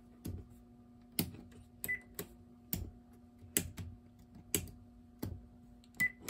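A string of sharp clicks at irregular intervals, about a dozen over six seconds, over a faint steady hum, with a short faint beep about two seconds in.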